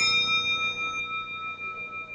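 A bell-like metal percussion instrument struck once in the performance music, ringing out with several clear tones; the highest tones die away within about a second while the lower ones keep sounding.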